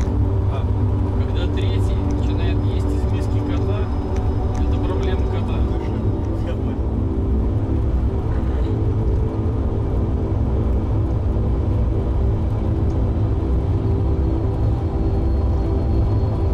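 Steady low road rumble heard from inside a moving vehicle, with a few held tones droning over it. There are indistinct voices and light clicks in the first few seconds.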